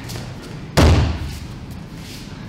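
An aikido partner's body landing on the dojo's training mat in a breakfall after a throw: one loud thud about three-quarters of a second in.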